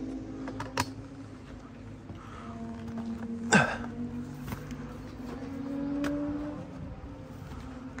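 A steady buzzing drone that holds a couple of tones and shifts slightly in pitch, with scattered light clicks and one louder crunch about halfway through.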